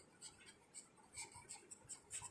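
Faint scratching of a pen writing words on a paper workbook page, in a series of short strokes.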